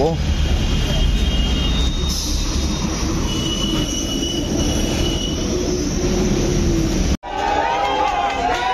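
Steady outdoor street noise, road traffic with wind rumbling on the microphone, with a few long high squealing tones in the middle. It cuts off suddenly near the end and gives way to crowd chatter.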